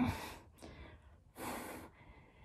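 A person breathing hard from the strain of holding a long plank. It opens with a short voiced sigh falling in pitch, followed by a breathy exhale about a second and a half in.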